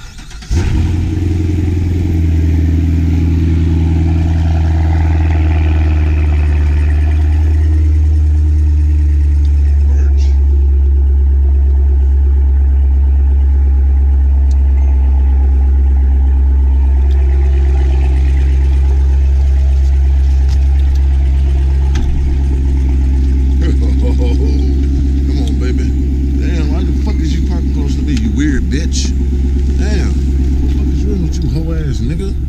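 Chevrolet Corvette C7's V8 engine starting suddenly about half a second in, then idling steadily, loud and low-pitched.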